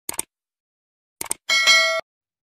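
Subscribe-button animation sound effect: two quick double clicks of a mouse, then, about one and a half seconds in, a bright notification bell ding that cuts off suddenly.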